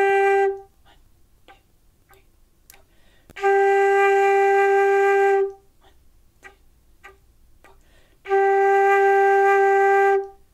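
Concert flute playing a beginner exercise on the note G: long held notes, all on the same pitch. One note ends just after the start, another sounds for about two seconds in the middle, and a third begins near the end, with rests of about three seconds between them.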